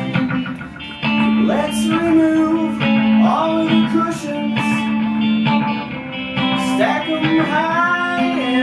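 Electric guitar strummed through an amplifier, playing a run of held chords in a song.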